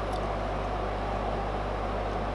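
Steady low hum and hiss of room background noise, unchanging throughout.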